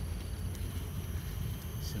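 Steady, unsteady low rumble of wind buffeting the microphone of a camera carried on a moving bicycle.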